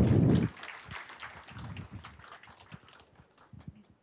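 A handheld microphone being handled, with a loud rustle in the first half-second, then a few faint, irregular footsteps on the stage.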